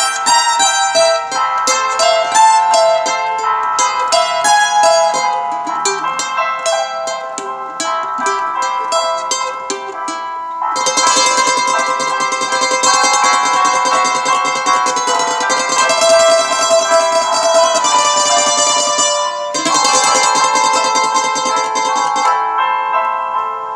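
Instrumental played solo on a small multi-course plucked string instrument: a melody of single picked notes for about the first ten seconds, then a fuller, continuous passage that breaks off briefly about three seconds before the end and resumes.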